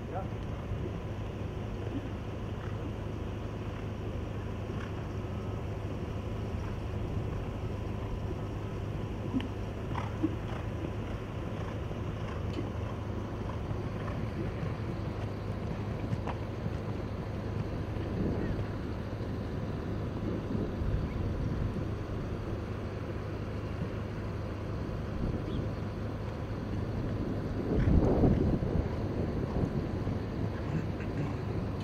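Steady outdoor background noise with wind on the microphone and a low rumble, a few faint clicks, and a short, louder muffled voice near the end.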